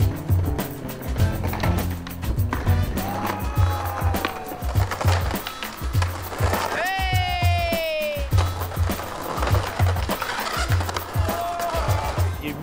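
Music with a steady bass beat plays over skateboarding sounds: wheels rolling on concrete and the board knocking against the ground.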